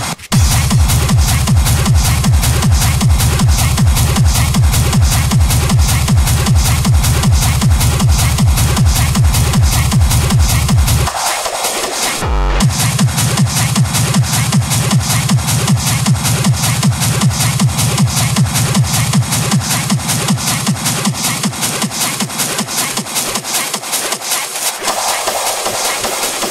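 Techno played in a DJ mix, with a steady driving kick drum and bass under a fast hi-hat pattern. About eleven seconds in, the kick and bass drop out for a moment, then return.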